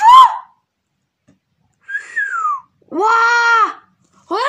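A person's excited, drawn-out exclamations like "ouah" and "wow": three high-pitched cries, the first rising and falling, the second sliding down, the last held level for about a second. Between the cries there is almost nothing to hear, not even wind noise.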